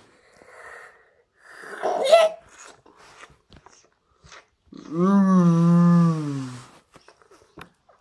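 A child's voice making monster sound effects, not words: a breathy, wheezy noise about two seconds in, then a long held vocal note that slides down at its end around the middle of the stretch, with small clicks of toys being handled between.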